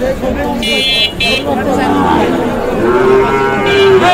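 A calf moos once in the second half, one long steady call over a background of crowd talk.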